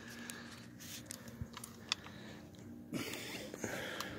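Faint handling noise of a phone being passed between hands: scattered small clicks and rustles over a faint steady low hum.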